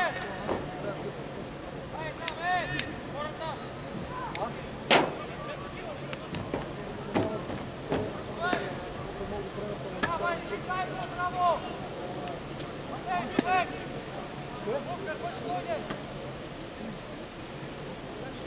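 Footballers' distant shouts and calls across an open pitch, short and scattered, with a few sharp knocks, the loudest about five seconds in and another near eight and a half seconds.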